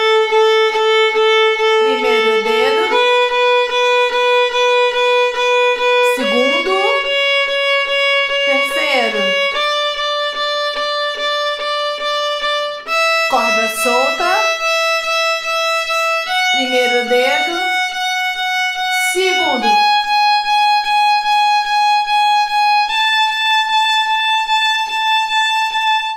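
Violin playing the A major scale upward over one octave, from the open A string to the A an octave above. Each note is bowed eight times in an even rhythm of short strokes, and the pitch steps up about every three seconds.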